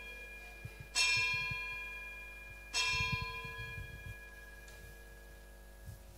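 An altar bell struck twice, about a second in and again near three seconds, each strike ringing and slowly fading; it is rung at the elevation of the host during the consecration.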